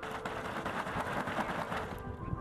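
Rustling of a carp bivvy tent's fabric as it is handled and brushed free of snow: a steady, grainy rustle.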